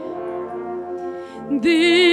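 A brass band holds soft sustained chords between the soprano's phrases. About a second and a half in, the singer comes back in on a held note with vibrato over the band.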